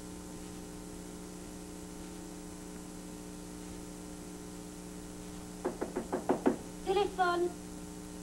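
Steady electrical hum, then near the end a quick burst of rapid knocking on a door, followed by a short call from a voice.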